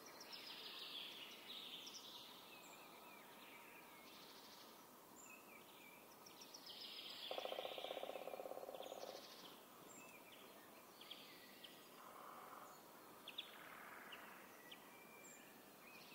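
Faint birdsong: many short chirps and trills scattered throughout. A low buzzy rasp about seven seconds in lasts about two seconds and is the loudest sound.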